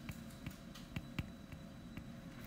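Faint, irregular light clicks of a stylus tapping and stroking on a tablet screen while handwriting, about six or seven in two seconds over low room noise.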